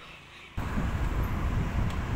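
Roadside traffic noise with a heavy, uneven low rumble, cutting in abruptly about half a second in.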